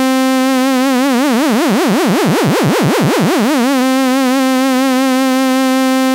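ASM Hydrasynth holding one sustained note, its pitch modulated by LFO 1: a vibrato swells in from a steady pitch to a wide wobble about two and a half seconds in, then narrows back to a steady pitch by about four seconds in as the modulation depth is turned up and down again.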